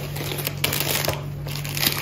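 Plastic food packaging crinkling and rustling as grocery packets are handled, in a few short bursts about halfway through and again near the end.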